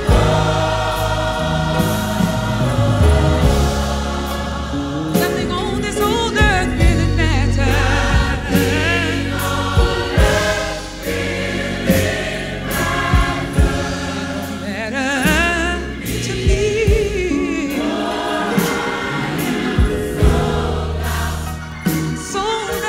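Gospel mass choir singing in full voice over a band, with a bass line and drum hits, played from a vinyl record.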